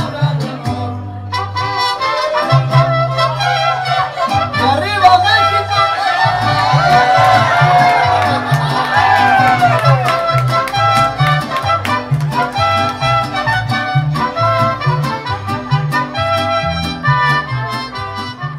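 Mariachi band playing: violins and trumpet carry the melody over strummed vihuela and a stepping bass line.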